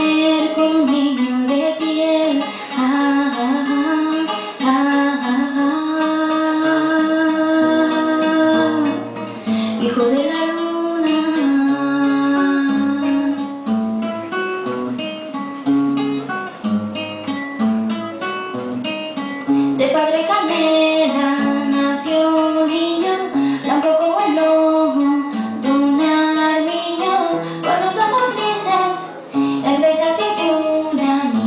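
A girl singing a slow song into a microphone, holding some notes for a few seconds, accompanied by a classical guitar played with plucked notes and chords.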